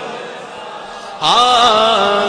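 A man chanting a naat into a microphone: a held note trails off, then about a second in a loud new sung 'aa' begins, its pitch rising and wavering.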